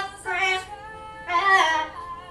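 Blue-fronted amazon parrot singing in a human-like voice: two wavering notes about a second apart.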